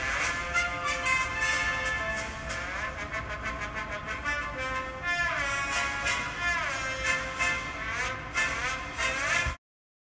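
Children imitating a trombone with their voices, buzzing through cupped fists. They hold sustained notes, with a few sliding falls in pitch around the middle, and stop abruptly just before the end.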